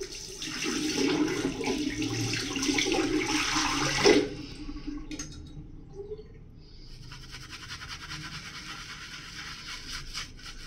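Tap water running for about four seconds, cut off with a sharp knock. After a short pause, a shaving brush swishes wet lather in quick, rasping strokes.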